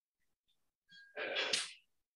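A single short, sharp burst of breath from a person, a little over a second in, lasting about half a second.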